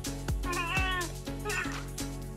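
A cat meowing twice over background music with a steady beat: a longer, wavering meow about half a second in, then a short one near the end.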